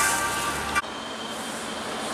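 A held, music-like tone cuts off abruptly under a second in, leaving a steady hiss of street traffic noise.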